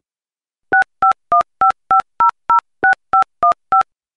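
Telephone keypad touch-tones: eleven short dual-tone DTMF beeps, about three a second, as a phone number is dialled.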